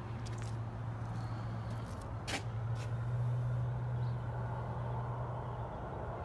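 Semi-truck diesel engine idling, a steady low hum, with a sharp click about two seconds in and a few fainter ones around it.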